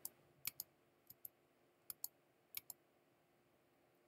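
Computer keyboard spacebar pressed about four times, each press a faint pair of clicks, with near silence between.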